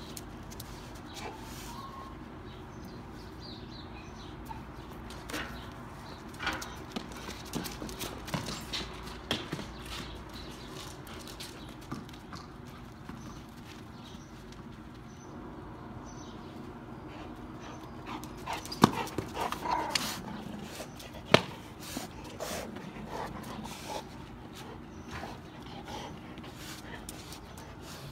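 A golden retriever moving about and making small vocal sounds while playing in a yard, over scattered clicks and scuffles, with two sharp knocks about two-thirds of the way in.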